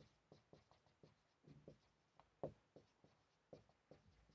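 Marker pen writing on a whiteboard: a string of faint, short squeaks and taps from the strokes, the strongest about two and a half seconds in.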